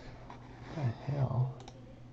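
Trading cards being thumbed through by hand, with a sharp click of card on card near the end, under a brief low mumbled voice that is the loudest sound.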